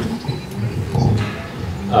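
Handheld microphone being passed from one person to another: handling knocks and rustle on the mic, with low voices underneath.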